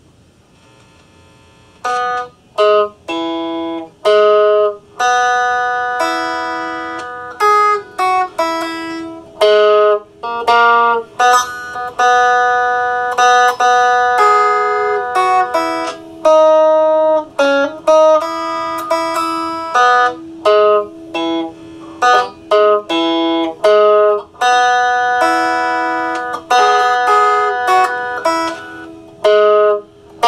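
RockJam electric guitar played with a clean tone: a melody of single picked notes, with a few chords, each left to ring. It begins about two seconds in.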